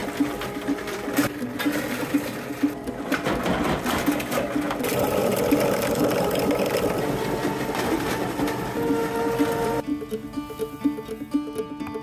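Plastic shredder running as it chews through household plastic packaging, with many short cracks from the pieces being cut, over background music. The shredder noise stops suddenly near the end, leaving the music.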